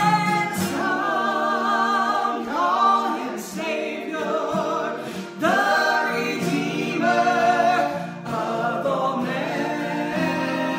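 A woman singing with two young male voices joining in harmony, in long held phrases, with an acoustic guitar played along.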